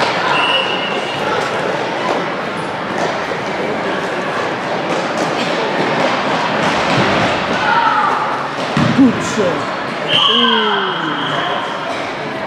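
Indoor futsal game din in a reverberant sports hall: indistinct voices of children and onlookers, with scattered thuds of the ball being kicked and bouncing on the court. Two short high steady tones cut through, one near the start and a longer one about ten seconds in.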